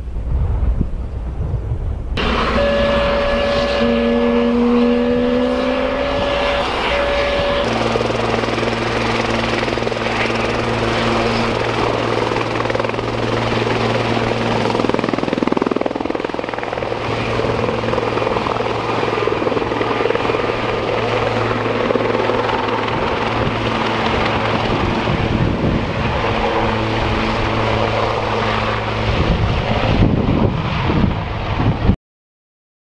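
Medical helicopter running with its rotor turning: a steady turbine and rotor drone. A few held whining tones shift between about two and eight seconds in, and a steady low hum sets in about eight seconds in.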